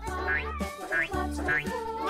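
Upbeat children's background music with a steady bass line, over which a short, rising, meow-like sound repeats several times.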